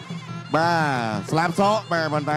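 Traditional ringside fight music: a reed oboe plays a wavering, sliding melody over a low steady drone. It is softer for the first half second, then swells into a long note that slides downward.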